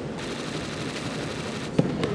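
One sharp impact of the thrown partner's body landing on tatami mats near the end, over a steady hall background.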